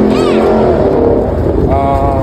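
People's voices over a loud, steady low rumble. A high-pitched voice rises and falls just after the start, and another voice comes in near the end.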